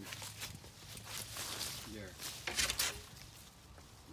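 Rustling and scuffling as a dog tugs at apples among the leaves of a low apple-tree branch, in a run of short noisy bursts that is loudest about three-quarters of the way through.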